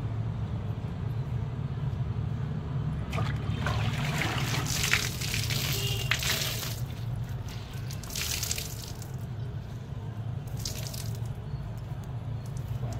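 Water splashing onto a concrete floor as a wet cloth is wrung out by hand, in several bursts starting about three seconds in, over a steady low hum.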